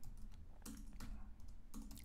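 Computer keyboard typing: a few faint keystrokes as a word is typed.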